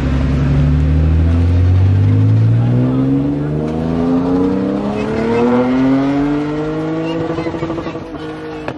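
BMW 3 Series saloon accelerating hard away. Its engine note climbs steadily in pitch for several seconds, then fades with distance near the end.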